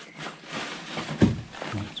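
Crunching and rustling of loose plaster rubble and debris underfoot, with one sharp thump a little over a second in.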